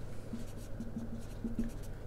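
Marker pen drawing a horizontal line across a whiteboard: quiet, scratchy strokes of the felt tip on the board.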